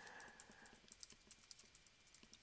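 Faint computer keyboard typing: a scatter of light key clicks.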